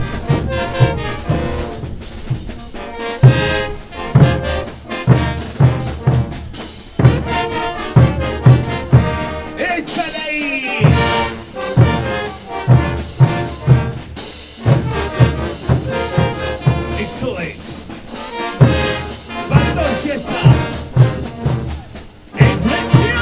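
Large Peruvian brass band playing a chutas medley: trumpets, trombones, saxophones and sousaphones over bass drums and crash cymbals keeping a steady beat, with brief breaks in the drumming.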